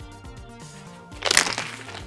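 Background music with a steady beat, then a little over a second in a short, loud splash of water thrown from a plastic bottle onto a person to put out a fire.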